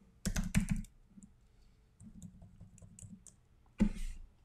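Typing on a computer keyboard: a quick flurry of keystrokes shortly after the start, a few lighter key taps through the middle, and a sharp key strike near the end.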